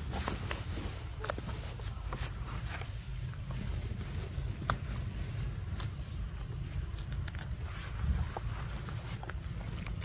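Low rumble of wind on the microphone, with scattered sharp clicks and crunches from a macaque biting and chewing a green fruit close by.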